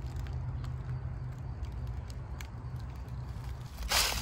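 Footsteps on dry leaves and twigs, as a few faint scattered crackles over a steady low rumble.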